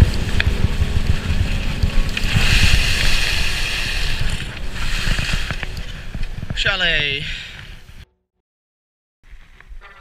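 Skis scraping and chattering over packed, uneven snow, heard through a helmet camera with wind buffeting its microphone. A short falling yell comes about seven seconds in, and the sound cuts out for about a second near the end.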